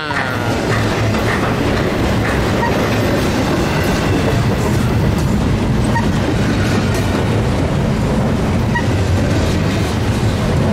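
Double-stack intermodal freight train's container-laden well cars rolling past close by: a steady, loud rumble and clatter of steel wheels on the rails.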